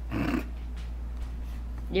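A Siberian husky gives one short, rough vocal huff.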